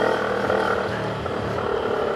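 CFMoto NK-400's 400 cc parallel-twin engine running at a steady cruise of about 50 km/h, heard from the rider's seat. It gives one even note that holds its pitch, with the throttle held steady.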